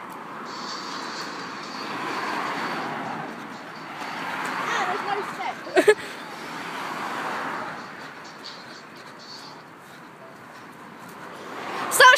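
Cars passing on a road, each one a hiss that swells and fades, three in a row.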